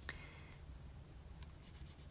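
Faint handling sounds of fingers on a strip of washi tape: a soft rustle with a few light ticks, the loudest just after the start.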